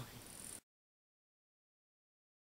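Near silence: faint outdoor background noise cut off abruptly about half a second in, then dead silence.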